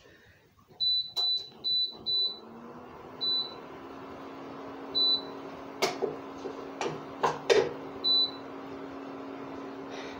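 Electric cooktop's control panel giving seven short high beeps as its buttons are pressed, then a steady hum from about two seconds in as the cooktop switches on and heats. A few sharp clinks of a utensil against the saucepan come in the second half.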